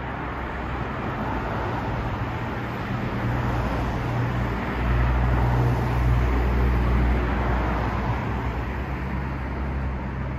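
London double-decker bus pulling away and driving past: a low, steady engine hum with road noise, building to its loudest about halfway through and easing off near the end.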